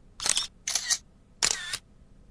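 Three short camera-shutter sound effects in quick succession, the last about a second and a half in.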